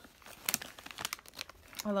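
Plastic snack bag of Bugles crinkling as it is picked up and handled, in scattered sharp crackles, one about half a second in and a cluster around a second in.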